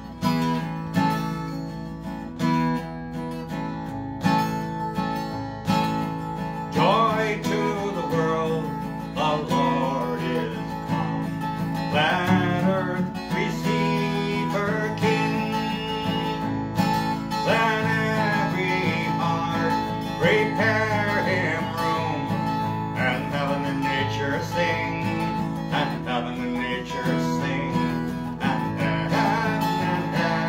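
Acoustic guitar strummed steadily, with a man singing along from about seven seconds in.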